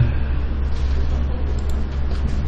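Steady low hum with an even background hiss, unchanging throughout; no speech.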